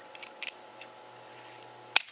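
Kness Snap-E plastic mouse trap clicking as it is handled and set, its steel bar latched back: a few faint clicks about half a second in, then one sharp, loud click at the end.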